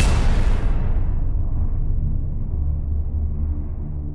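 A cinematic boom sound effect that hits at once, its brightness sweeping away within about a second into a low, steady bass rumble: the opening of a music track.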